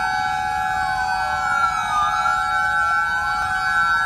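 Several sirens sounding together: steady high tones with wailing pitches that rise and fall over about two seconds, overlapping out of step.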